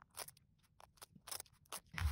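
Masking tape being peeled off a perspex plate, heard as a faint, irregular run of small crackles and ticks.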